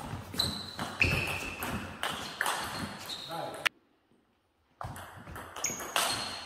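Table tennis rally: the ball clicking sharply off the bats and the table, several hits spaced roughly half a second to a second apart, each with a short ringing ping. The sound cuts out for about a second past the middle, then the clicks resume.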